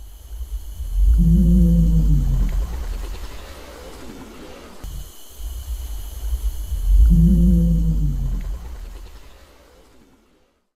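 Reconstructed Tyrannosaurus rex vocalization modelled on bird and crocodile calls scaled up to T. rex size: a deep, low rumbling with a droning tone above it, heard as two long calls that each swell and then fade, the second starting about six seconds in.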